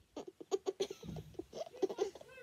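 A child giggling quietly in short, choppy bursts.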